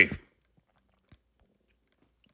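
A spoken phrase trails off just after the start, then near silence with one faint click about a second in.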